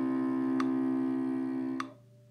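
Cello bowing one long, sustained low note, the closing note of a two-octave C major scale, which stops near the end. Metronome clicks at 50 beats per minute sound twice, about half a second in and again as the note stops.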